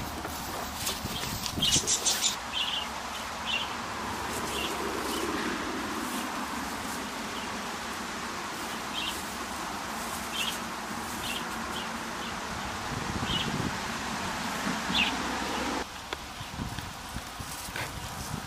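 Outdoor animal-pen ambience with short, high bird chirps recurring every second or so, and a few loud knocks about two seconds in. It drops quieter near the end.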